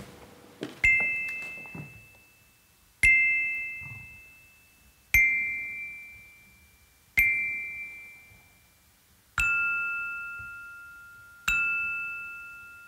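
Pitched percussion struck with a mallet, one note about every two seconds, each ringing clearly and dying away; from about nine seconds in the notes carry an added lower tone.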